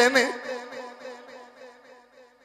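A man's chanted line ends just after the start, and its held note lingers as a steady buzzy hum that fades away over about two seconds, like an echo tail through a public-address system.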